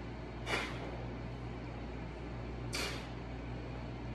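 A person breathing out in two short, breathy puffs, about half a second in and again near three seconds, while pressing a pair of dumbbells overhead, over a steady low hum.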